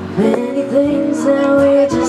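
Live song: a singer holds a long note over acoustic guitar accompaniment.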